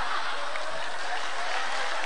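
Studio audience applauding steadily after a punchline.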